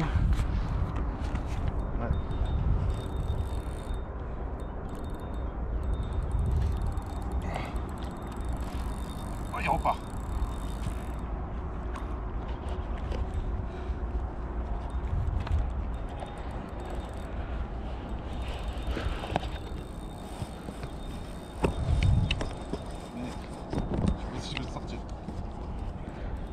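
Wind rumbling on the microphone over open water, with a few brief faint sounds.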